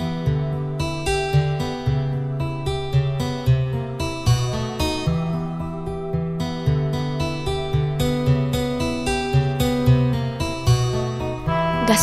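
Instrumental break in a song's backing track: plucked acoustic guitar over a steady bass line, with no voice.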